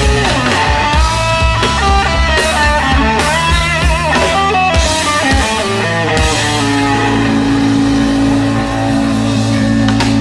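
Live blues-rock power trio playing: an electric guitar lead with bent, wavering notes over bass and drums, settling into long held low notes about six and a half seconds in.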